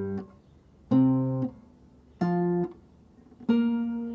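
Acoustic-electric guitar playing octave shapes: three separate plucked two-note octaves about a second apart. Each is damped after about half a second, and the last is left ringing.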